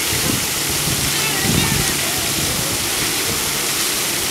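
Fountain jets splashing into a stone basin: a steady rush of falling water.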